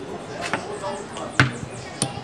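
Plastic checkers pieces clacking down on the board as moves are made: two sharp clicks, the louder about one and a half seconds in.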